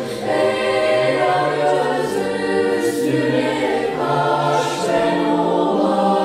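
Girls' choir singing in harmony, several voice parts holding sustained chords that move to a new chord every second or so.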